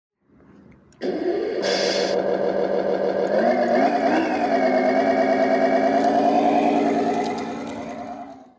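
Simulated Detroit Diesel truck engine sound from an ESP32 sound controller, played through the speaker of a Tamiya King Hauler RC truck. It starts up about a second in with a brief hiss, revs up once and drops back a few seconds later, then idles steadily and fades out near the end.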